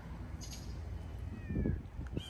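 A domestic cat meows once, briefly, about one and a half seconds in, over a steady low outdoor rumble.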